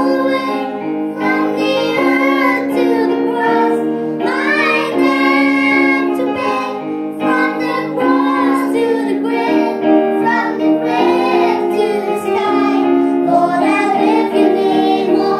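Children singing a song, a girl's voice leading through a microphone, accompanied by an electronic keyboard playing held chords.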